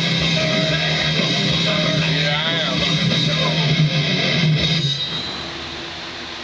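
Recorded rock song with electric guitar playing. The music stops about five seconds in, leaving a quieter steady room noise.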